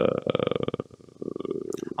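A man's drawn-out hesitation 'euh' sinking in pitch and trailing off into a creaky, crackling vocal fry, followed by quieter voice murmurs in the second half.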